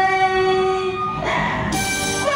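Live accompaniment and singing from a Vietnamese traditional costume-opera stage show: a long held note that breaks off a little past the middle, followed by a bright, noisy clash near the end as the instruments come in.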